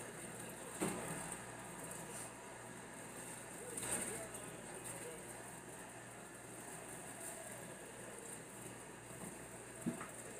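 Kitchen faucet running steadily into a part-filled sink basin. A few light knocks come through, about a second in, around four seconds in and near the end.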